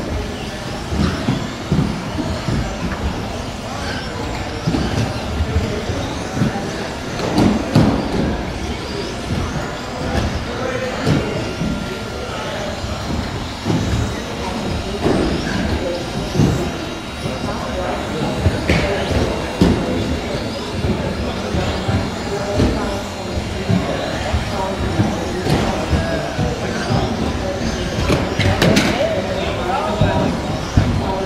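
Electric stock-class 1/10 RC buggies racing on an indoor carpet track: motors whining and many short knocks from landings and barrier hits, under a hall full of voices.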